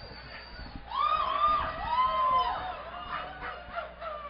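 Concert audience whooping and cheering between songs: a few long, rising-and-falling cries from about a second in, with a high thin whistle at the start and scattered claps near the end.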